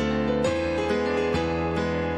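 Piano sound played on an electronic keyboard: a steady march-like figure of chords over held bass notes, a new chord struck about twice a second, in a slow, sad cinematic style.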